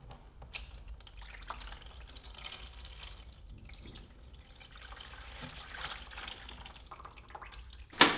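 Liquid poured from a plastic jug into a metal darkroom tray, splashing and trickling steadily as the tray fills.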